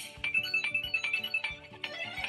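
Upbeat channel-intro jingle: quick, short high notes over a steady beat, with a brief burst of hiss right at the start.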